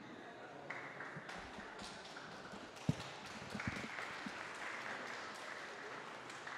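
Light, scattered applause from an audience in a large hall, fairly faint, with a couple of soft low thumps about three seconds in.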